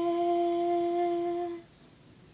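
A woman's unaccompanied voice holds one long, steady final note of the song. It stops about one and a half seconds in and is followed by a brief breath.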